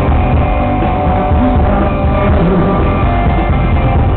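Live rock band playing loud and steady, with electric guitar and drums.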